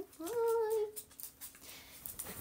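A short hummed vocal note, held level for about two-thirds of a second and dropping slightly at the end, followed by faint scattered clicks.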